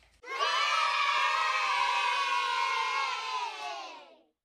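A group of children cheering together in one long, loud, held cheer that starts a moment in and trails off near the end.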